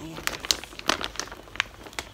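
Yellow plastic courier bag being handled, crinkling in a run of irregular sharp crackles.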